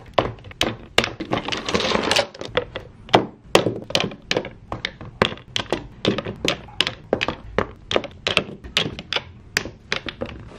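Quick clacks and knocks of small hard objects, nail-polish bottles and nail supplies, being set down and put away while tidying, about three a second, with a short rustle about two seconds in.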